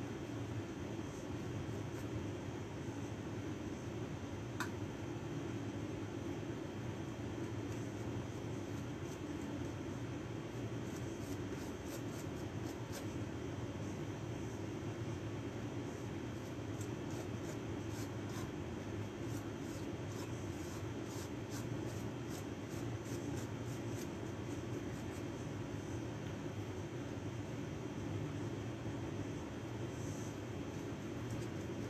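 A paintbrush dabbing and scraping oil paint onto canvas, a run of many faint, quick strokes from about ten to twenty-five seconds in, over a steady low background hum.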